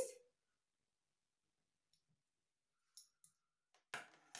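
Near silence, then a few faint, short clicks in the last second: metal spoons being set down on a table.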